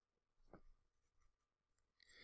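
Near silence: room tone, with one faint brief click about half a second in.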